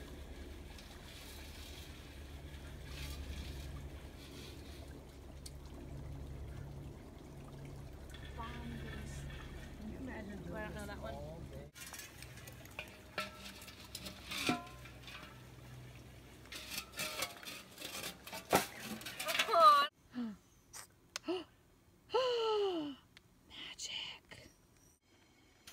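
Shallow creek water running and sloshing as gold pans are worked in it, under indistinct voices. Near the end the sound changes abruptly to a quieter scene with short voice sounds.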